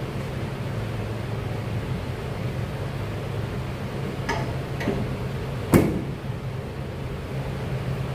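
Steady low hum of a gym's ventilation, with a sharp knock a little past the middle and two fainter clicks shortly before it.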